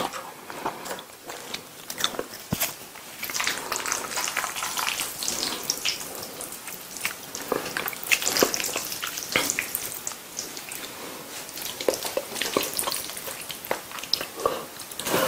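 Close-miked chewing of meatball spaghetti in tomato sauce: a steady run of small wet clicks and mouth smacks.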